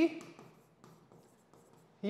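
Faint ticks and light scratching of a stylus writing on the glass surface of an interactive display panel.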